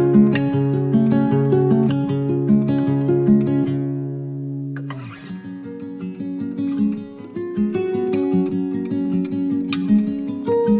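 Acoustic guitar playing an instrumental passage of a calm indie-folk song in separately picked notes. The playing thins out about four seconds in, stops for a moment just before the fifth second, and picks up again.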